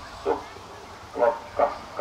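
A dog barking a few short barks, spaced irregularly.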